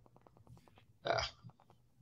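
A short pause in conversation, broken about a second in by one brief, throaty hesitation sound, "uh", from a person.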